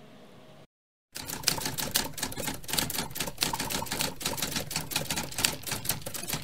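Typewriter sound effect: quick, even keystroke clicks, many a second, starting about a second in after a brief dead silence.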